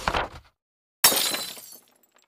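Editing sound effects for a logo reveal: a short noisy burst, then about a second in a sudden crash that dies away in under a second.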